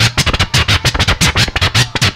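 Hip-hop turntable scratching over a beat: the record's sound is chopped on and off rapidly, about nine cuts a second, over a steady bass line.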